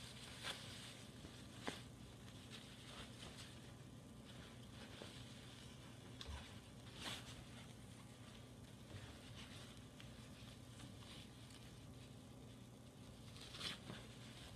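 Very quiet handling of cloth: a few faint, brief rustles and soft taps as a sewn fabric piece is turned right side out by hand, over a low steady room hum.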